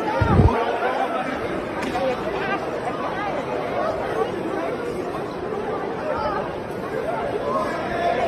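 Audience members talking and calling out over one another in a large hall, a dense, agitated crowd babble. A low thump about half a second in.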